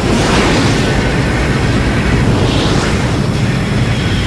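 Loud, steady rushing jet roar, an even noisy rumble with no clear whine, that cuts in and out abruptly as an edit.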